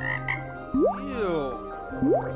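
Cartoon frog-croak sound effect: a pitched call that slides sharply up and then falls away, with a second upward slide near the end.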